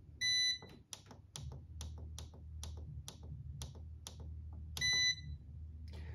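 Jura X9 professional coffee machine beeping once, then clicking evenly a little over twice a second over a low hum, and beeping again near the end, as its buttons are pressed to call up the total cup counter.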